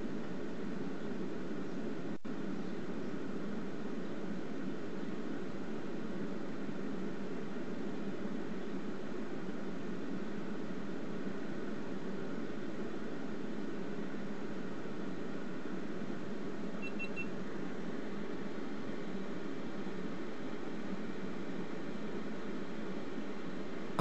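Steady, unchanging rushing noise from the rocket's onboard camera in flight, strongest low in the range, with one brief dropout about two seconds in and a faint short beep about two-thirds of the way through.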